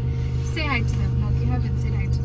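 Steady low hum inside a car's cabin, with a short stretch of quiet speech or laughter about half a second in.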